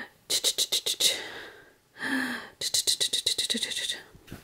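Two runs of quick rustling strokes from a hand rubbing and patting a newborn's chest through a cotton onesie to wake him, with a short low voiced hum between them.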